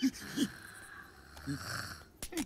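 Cartoon character's breathy, wheezing vocal sounds: a long hissing breath that swells near the end, broken by a few short voiced grunts.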